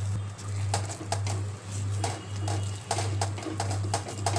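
Silicone spatula stirring and scraping thick semolina dough around a steel kadhai, in short irregular strokes, as the dough is mixed and dried over the flame. A low hum runs underneath, swelling and dipping in short even pulses.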